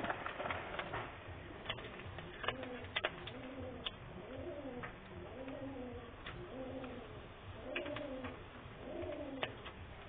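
A pigeon cooing, a soft rising-and-falling call repeated about once a second from a few seconds in. Sparse sharp crackles of whole spices and dried red chillies frying in hot oil in a wok.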